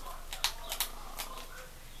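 A few soft, irregular clicks from the buttons of a TV remote in a plastic protective cover being pressed, over quiet room tone.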